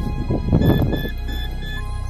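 Dark, tense background music over a sustained low drone. About half a second in, a rough noisy burst rises and falls, with a run of four short, evenly spaced high beeps over it.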